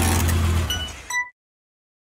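Outro logo sound effect of a car engine running with a steady low hum, fading after about half a second, then a brief high tone. The sound cuts off abruptly to silence a little over a second in.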